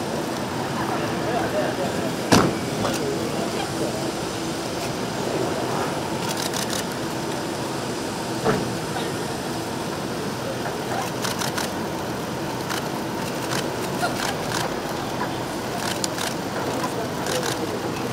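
An SUV's engine running at low speed under a murmur of voices, with a sharp knock about two seconds in and another about eight and a half seconds in.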